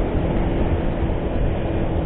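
Steady running noise of a motor scooter being ridden through traffic, with wind rushing over the microphone.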